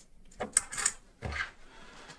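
A few short clicks and knocks of small objects being handled and set down on a workbench, followed by a duller thump.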